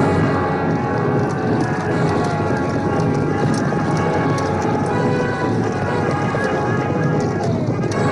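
Orchestral film score over the noise of a battle: horses galloping and many voices shouting.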